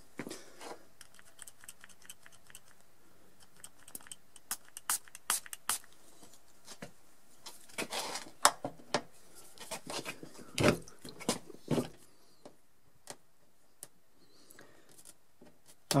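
Irregular small clicks and scrapes of a plastic scraper and fingers working a glued-on dent-puller tab off a car's painted body panel, the glue loosened with 70% rubbing alcohol. The sounds come in scattered bursts, with a few louder knocks in the middle.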